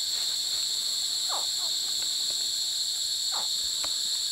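A steady, high-pitched night insect chorus, with two faint downward-sliding chirps, about a second in and past the three-second mark: the calls of Philippine crocodile hatchlings hatching in the nest.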